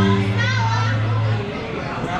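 A live band ends a song on a held low note that stops about a second and a half in, over loud crowd chatter and voices.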